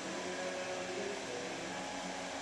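Steady hum and hiss of room ventilation in a studio, unchanging throughout.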